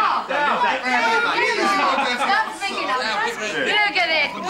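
Several people talking and shouting over one another at once: excited, overlapping chatter in which no single voice stands out.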